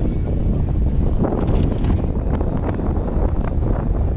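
Wind buffeting the microphone in a loud, steady low rumble, with a cluster of sharp clicks and rattles about one and a half seconds in.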